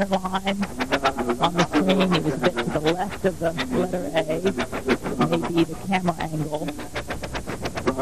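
Commentary speech: a voice talking throughout, its words not made out.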